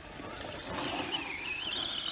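Whine of an Arrma Senton 4x4 RC truck's HPI 4000kV brushless motor on a 2S LiPo, driven by throttle. It starts about half a second in, wavers in pitch, then climbs steadily near the end as the truck speeds up.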